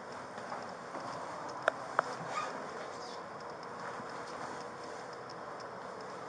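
Two sharp clicks about a third of a second apart, roughly two seconds in, over steady background hiss and faint handling noise.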